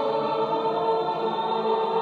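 Mixed choir of men's and women's voices singing, holding a long, steady chord.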